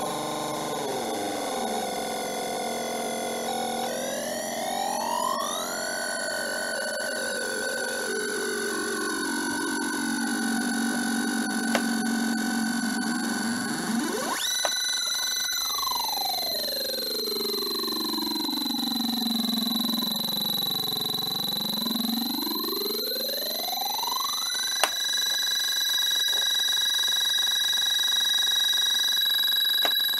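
Homemade NAND-gate Schmitt-trigger oscillator synth sounding several electronic tones at once, their pitches sliding as its potentiometers are turned. A tone rises at about four seconds. Midway a tone sweeps slowly down to a low buzz and back up, and the whole sound jumps abruptly twice.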